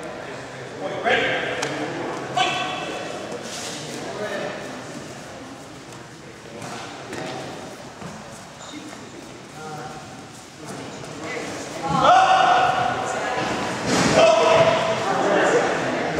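Short shouts and calls from people at a karate sparring match, echoing in a gymnasium; quieter through the middle and loudest near the end.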